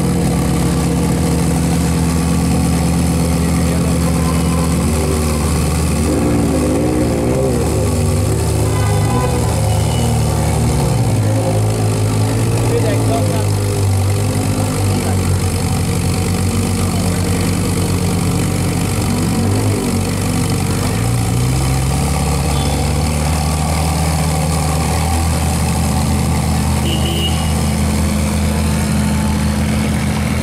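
Ferrari 458 Speciale's naturally aspirated V8 idling steadily. Its note steps up slightly about two-thirds of the way through.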